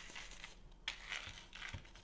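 A cloth rubbing hemp oil into a milk-paint-stained wooden sign: faint, uneven scrubbing strokes, the strongest a little under a second in.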